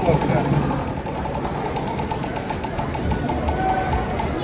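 Indistinct crowd chatter from many voices, with music faintly underneath.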